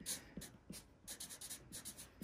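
Felt-tip marker writing on paper: a quick run of short, faint strokes as a fraction is written out.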